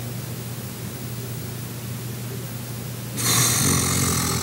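A steady low hum, then about three seconds in a loud rush of breath as a man blows out hard close to the microphone, cheeks puffed.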